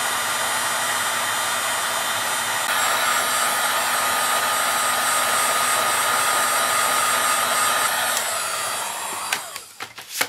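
Electric heat gun blowing hot air into the open base of a horn to heat it, running steadily with a thin whine and getting louder a little under three seconds in. About eight seconds in it is switched off and its fan winds down, followed by a few knocks of handling near the end.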